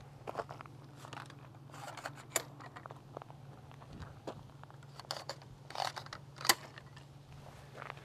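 Scattered light clicks and crunches from a metal traffic sign stand being handled on gravel: its aluminium telescoping legs being pulled out and set, with footsteps crunching on the gravel. A faint steady low hum runs underneath.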